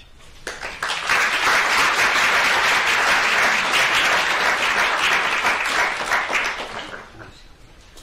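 Audience applauding: the clapping builds up within the first second, holds steady, and dies away near the end.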